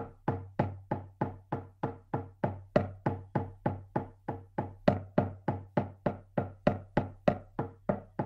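Shamanic hand drum beaten in a steady, even rhythm of about four strikes a second, each beat ringing briefly. It is the monotonous drumbeat that carries a shamanic journey.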